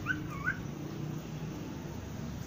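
A pet parrot gives two short chirps in quick succession right at the start, each sliding up and down in pitch.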